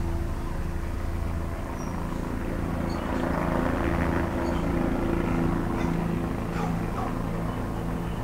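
A steady low mechanical hum like an engine running, with a few faint high chirps.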